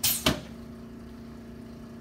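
A steady low machine hum in a small room, with one short sharp rush of noise right at the start.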